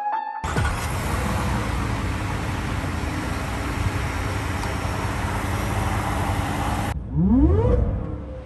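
Whipple-supercharged 5.0L V8 of a Ford F-150 running with a steady, noisy sound that cuts off abruptly about seven seconds in. In the last second it revs hard, rising quickly in pitch.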